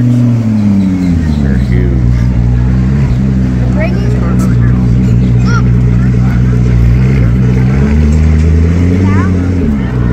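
McLaren P1's twin-turbo V8 running loud and low as the car creeps along: a rev falls away in the first second, the note holds steady, then rises again and drops off near the end.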